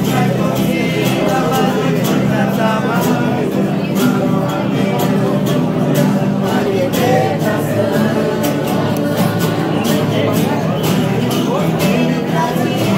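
A group of voices singing a worship hymn, accompanied by two strummed acoustic guitars at a steady rhythm.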